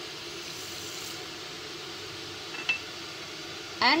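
A steady hiss from the stove heating a steel pan of milk, with one light clink of a bowl against the pan about two and a half seconds in as sugar is tipped in.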